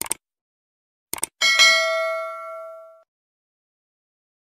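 Subscribe-button animation sound effects: a click at the start and a quick double click about a second in, then a notification-bell ding that rings out and fades over about a second and a half.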